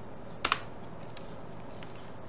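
Computer keyboard: a single sharp keystroke about half a second in, heard as a quick double click, the Enter key that runs the command. A couple of faint key taps follow.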